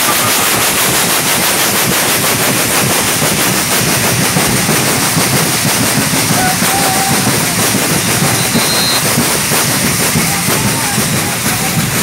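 Many patangomes, round metal pan rattles filled with seeds or shot, shaken together in a fast, dense, continuous rattle, over drumming. Faint singing voices come through now and then.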